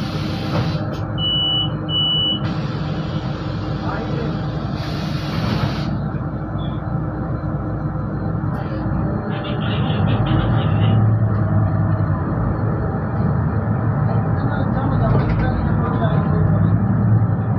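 Interior of a Solaris Urbino 12 III city bus: the engine runs steadily while the bus waits, with two short high beeps near the start. From about ten seconds in, the engine grows louder as the bus pulls away.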